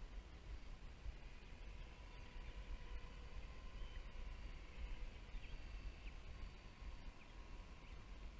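Faint, steady whine of a radio-controlled scale helicopter flying at a distance, with a few short bird chirps in the second half and low wind rumble on the microphone.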